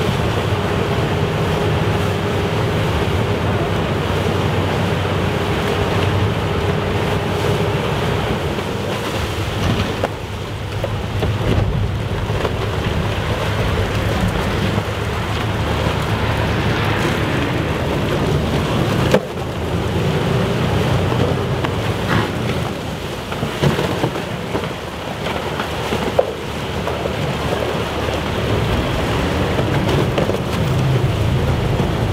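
River hotel ship's bow pushing through pack ice: continuous crunching and grinding of ice floes and churning water over the steady low hum of the ship's engine. A few sharp cracks stand out in the second half.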